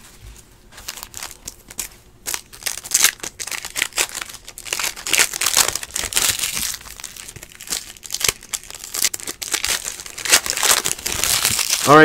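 Trading cards and their foil wrappers being handled: irregular papery crinkling and rustling with small clicks and slides, louder from about two seconds in.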